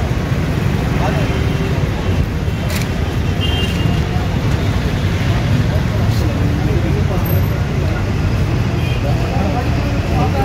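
Steady road traffic noise from passing vehicles, with indistinct voices mixed in.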